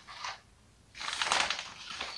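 Plastic carrier bag crinkling and rustling as hands rummage inside it, starting about a second in.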